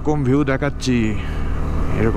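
KTM Adventure 250's single-cylinder engine running at a steady cruising speed under the rider, with a steady drone.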